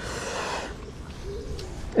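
A brief soft rush of noise at the start, then a single faint coo of a dove in the background near the middle.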